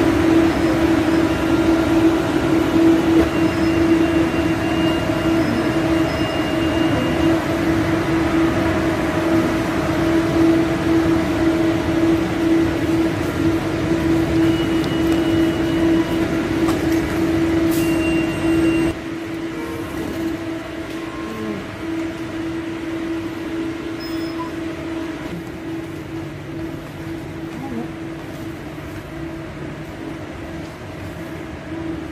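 Steady hum and rumble of an ERL electric train, with a strong steady mid-pitched drone running through it. A little past halfway the noise drops suddenly, leaving a quieter steady hum.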